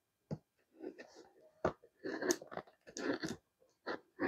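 Small scissors cutting through the packing tape and cardboard of a shipping box, a series of short, irregular crunchy snips.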